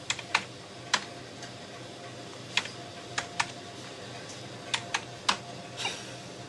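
Cash register keypad keys being pressed one at a time: about ten short, sharp clicks at uneven intervals. The register is not responding the way the cashier wants.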